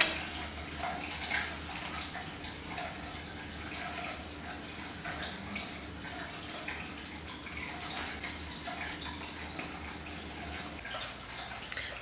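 Quiet room tone: a steady low hum with faint, scattered light ticks and taps.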